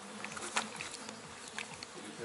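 A fly buzzing with a faint, steady low drone, with a few soft clicks as the horse licks the wooden stall rail.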